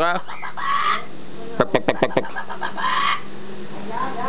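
Amazon parrot mimicking a hen clucking: two runs of about six quick clucks, each ending in a drawn-out hoarse cackle.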